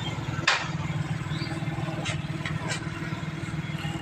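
Small motorcycle engine idling with a steady, even pulse, and a sharp click about half a second in.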